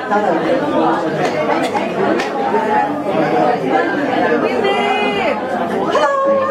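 Chatter: several people talking at once in a large room.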